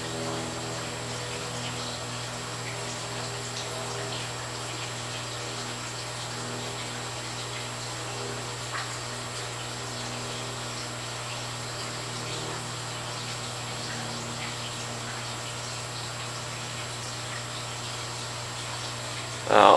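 A steady low hum with faint higher tones above it, the room tone of running aquarium equipment. There is a small click about nine seconds in.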